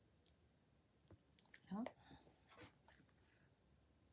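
Near silence with a few faint clicks and taps of small craft pieces and a tool being handled on the card, and a short murmured vocal sound rising in pitch a little before halfway through.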